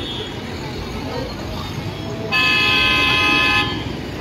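A car horn sounds once, held steady for about a second and a half from a little past halfway through, over a background of street traffic and crowd noise.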